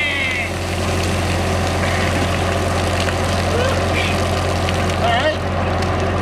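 Skid-steer loader engine idling with a steady low hum while water pours from its raised bucket and splashes onto a man and the pavement. A few short voice calls sound over it near the middle and end.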